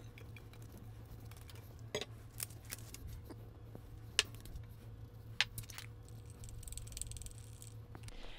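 Scattered small clicks and knocks of kitchen utensils and containers being handled, a few seconds apart, over a low steady hum.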